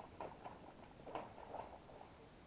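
A few faint, light taps and rustles from fishing tackle being handled by hand, three or four small clicks spread over two seconds.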